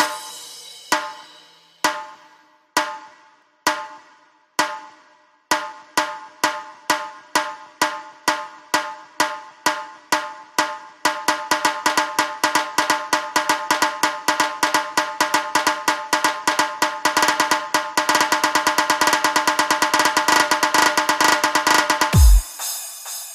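Tasha drum strokes that ring after each hit. They start about one a second, speed up to about two a second, then faster again, and merge into a rapid roll over the last few seconds, building up the rhythm.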